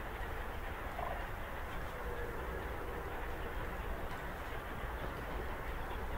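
Faint, short bird calls over a steady low rumble of outdoor background noise.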